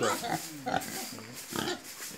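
Large White and hybrid pigs grunting a few times at close range.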